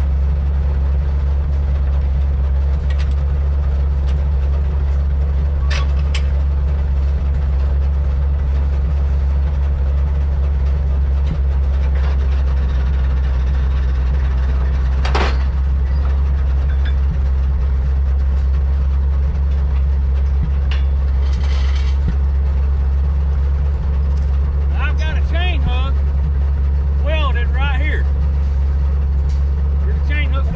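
Old side-loader log truck's engine idling with a steady low rumble, with a sharp metal clank about halfway through as the loader arm is worked.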